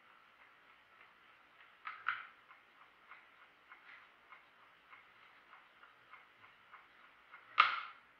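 Soviet 1967 Jantar Bakelite-case mechanical chess clock ticking steadily, about three ticks a second. A pair of clicks about two seconds in and a louder knock near the end come from play at the board.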